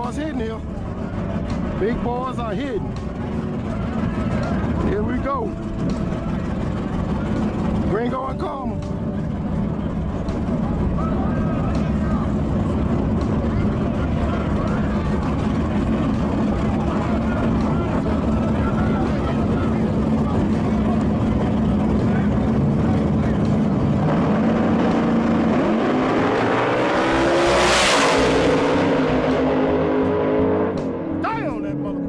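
Two drag-racing cars' engines idling at the starting line with short throttle blips in the first several seconds. Then both launch: the engines rise sharply as the cars pull away down the track, loudest about two seconds before the end.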